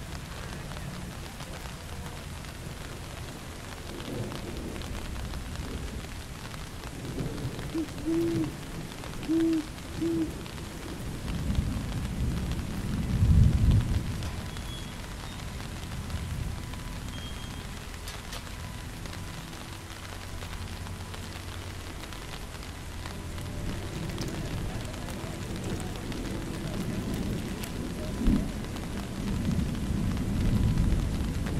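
Steady rain with rolls of thunder: a low rumble swells to the loudest point about a third of the way in, and another builds near the end. Three short owl hoots come just before the first rumble.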